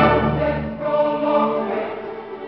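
Baroque string ensemble with cello and keyboard continuo playing: a loud full passage gives way to softer held chords that fade toward the end.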